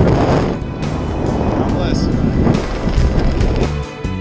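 Wind rushing over the microphone under an open parachute canopy, with background music rising in and taking over near the end.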